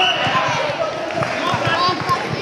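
A run of dull low thuds, irregular and several a second: bare feet bouncing and stamping on a sports-hall floor as two karate fighters move in a kumite bout. Shouting voices of the crowd run over it.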